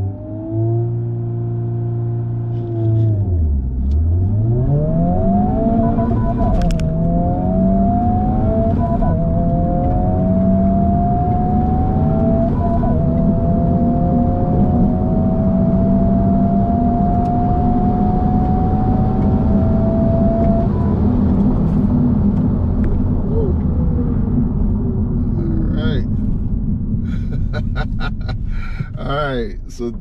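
In-cabin sound of a Honda Civic Type R (FL5)'s turbocharged 2.0-litre four-cylinder on a standing-start quarter-mile run. The revs are held steady, dip as the car launches, then climb through the gears with a drop in pitch at each upshift, followed by a long rising pull in the last gear. Near the end the revs settle and fall away as the driver lifts off.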